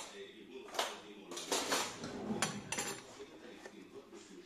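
Metal cutlery clinking and rattling in several separate sharp strikes, as a teaspoon is picked out from among other utensils.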